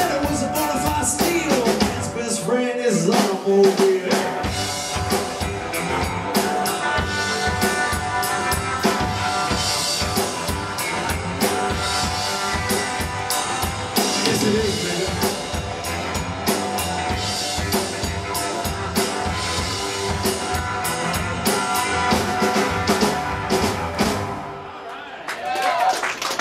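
Live roots band playing an instrumental passage on drum kit and upright double bass, with many sharp drum hits. The music drops away about a second before the end.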